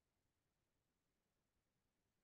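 Near silence: the audio is effectively dead quiet, with no sound events.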